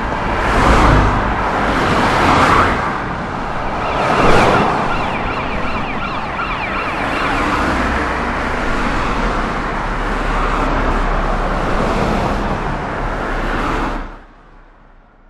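Emergency vehicle siren sounding over traffic noise as cars drive past, with a steady low engine rumble joining about halfway through.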